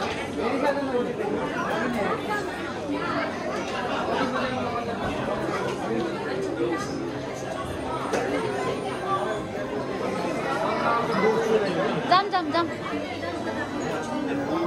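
Indistinct chatter of many people talking at once, with a short burst of clicks about twelve seconds in.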